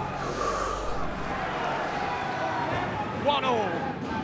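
A man breathes in sharply through the nose, a brief sniff about half a second in, over a low hum. Faint speech starts near the end.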